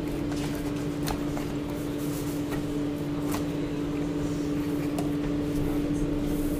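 Steady machine hum holding one constant low tone, with a few light taps as cardboard pizza box lids are handled.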